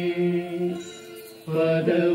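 Devotional mantra chanting: a voice holds one long note that fades out about a second in, and a new chanted phrase begins about a second and a half in.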